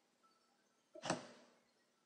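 A single short computer mouse click about a second in, closing a browser tab, against near-silent room tone.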